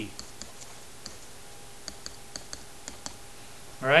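Faint, irregular clicks and taps of a stylus pen on a tablet screen as it writes short handwritten strokes.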